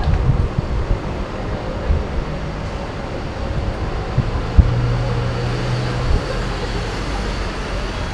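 Street traffic noise: a steady low rumble of cars passing on the road. About four and a half seconds in there is a sharp knock, followed by a low steady drone lasting about a second and a half.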